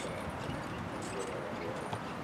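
Hoofbeats of a horse trotting on the soft arena footing while it pulls a driving carriage, heard as a low, steady sound with no loud single impacts.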